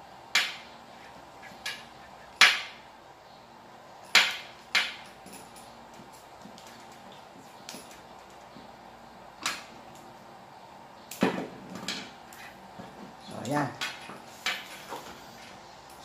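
Irregular sharp clicks and knocks of hands handling wires, connectors and tools on a tabletop during horn-relay wiring, about ten in all, the loudest about two and a half seconds in.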